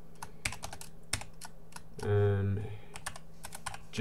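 Typing on a computer keyboard: irregular keystroke clicks as text is entered. About halfway through there is a brief sound from the typist's voice, louder than the keys.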